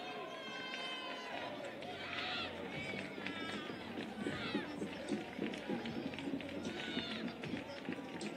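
Pitch-side sound of a football match: scattered shouts and calls from players and spectators, with voices chattering underneath.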